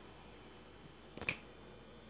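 A single finger snap, a little over a second in, against faint steady background hum.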